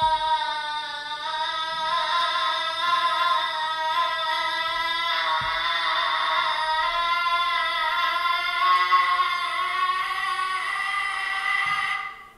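Recording of a mezzo-soprano's distorted voice played back: a held, rough vocal tone rich in upper partials that wavers and shifts pitch slightly, produced with an extended distortion technique. The playback cuts off abruptly at the end.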